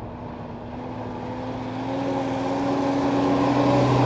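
A large bus's engine running as it approaches, growing steadily louder and rising slightly in pitch until it passes close by near the end.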